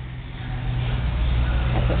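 A motor vehicle engine idling steadily, a low even drone.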